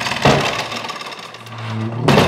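Heavy old wooden double doors being pushed shut: a knock about a quarter second in, then a steady scraping and rattling as the leaves swing closed, with a low groan building toward the end.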